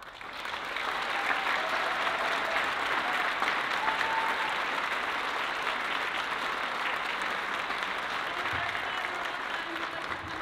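Concert audience applauding as a piece ends, building up within the first second and then holding steady.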